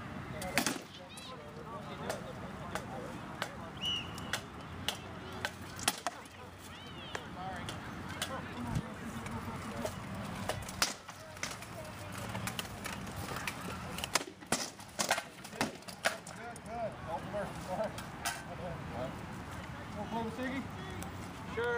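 Armoured sword-and-shield sparring: sword blows knocking against shields and armour in irregular flurries, with the heaviest runs of strikes about ten seconds in and again about fourteen to sixteen seconds in.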